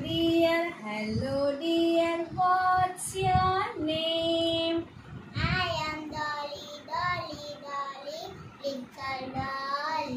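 A woman and a young girl singing a simple English greeting song unaccompanied, in short held-note phrases, the girl repeating the lines after the woman.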